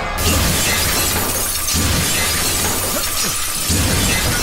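Sudden crash of shattering glass about a quarter of a second in, its noise lasting several seconds, over background film music.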